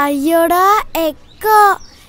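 A child's high-pitched voice in three drawn-out, sing-song phrases, the first long and rising, then two short ones.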